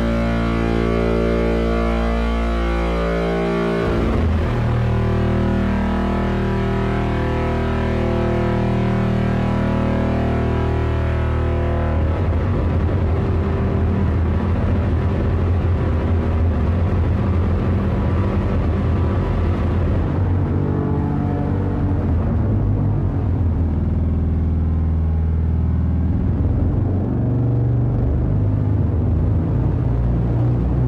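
Ambient drone from a Steve's MS-22 dual filter (Eurorack, MS-20-inspired) with both filters self-oscillating, drenched in a large reverb. It forms a dense, sustained stack of tones whose pitch and texture shift abruptly a few seconds in, turn grittier about twelve seconds in, and thin out again later as the filter knobs are turned.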